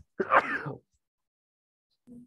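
A person coughs once to clear the throat, a short burst about a quarter second in that lasts about half a second.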